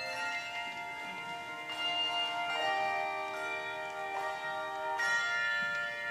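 Handbell choir ringing slow chords: each new set of bells is struck and left to ring, with fresh notes entering every second or two.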